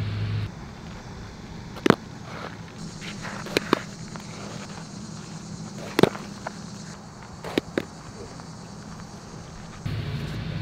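Sharp pops of a baseball meeting a flat pancake training glove during ground-ball fielding drills, six in all, two of them in quick pairs, over a steady outdoor hiss.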